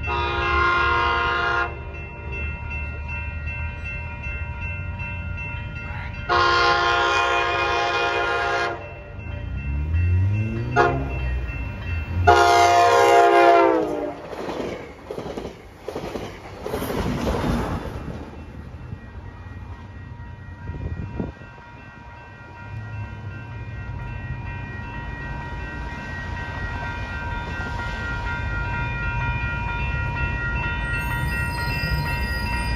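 NCTD Coaster commuter train sounding its horn as it approaches: a blast at the start, a longer one a few seconds later, and a third about twelve seconds in that drops in pitch as the horn passes. Then the bilevel coaches roll by on the rails, fading to a lower rumble. A grade-crossing bell rings faintly in the background.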